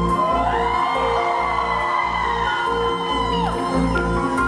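Live band music with a steady low bass underneath; a long high note glides up, holds, and slides back down about three and a half seconds in.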